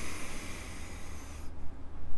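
A man's long, deep inhalation, close to a clip-on microphone, drawn in preparation for a Kundalini yoga chant; it stops about one and a half seconds in.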